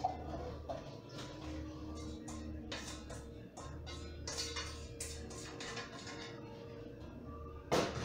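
Quiet background music with held notes and a soft pulsing bass, under scattered short clicks and knocks, the loudest one just before the end.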